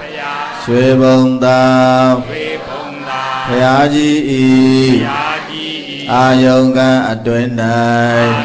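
Buddhist devotional chanting in Pali and Burmese by a man's voice. It is sung on long held notes in phrases of a second or two, with short breaths between them.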